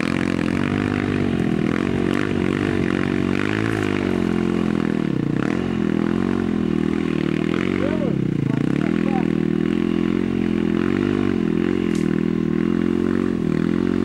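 Enduro dirt bike engine revving up and down under load as the bike climbs a muddy slope, its revs dropping sharply twice, about five and eight seconds in.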